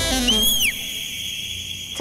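Comedy background-score sound effect: a whistle-like tone that swoops up and back down, then holds a high steady note.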